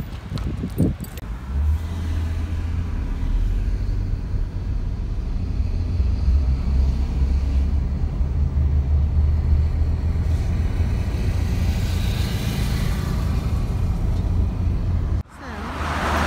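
Engine and road noise heard from inside a moving car: a steady low rumble that stops suddenly near the end.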